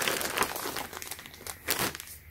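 Clear plastic packaging bag crinkling as it is handled, a dense crackle that thins out after about a second, with a brief louder rustle near the end.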